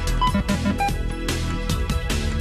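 Game show background music with a steady beat and a running bass line, played under a timed round.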